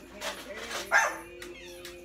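A dog barking twice, short barks about a second apart with the second the louder, over background music holding steady notes.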